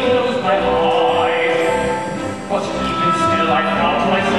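A male baritone singing an operetta number with orchestra accompaniment, holding long notes; the phrase breaks off briefly about two and a half seconds in and a new one begins.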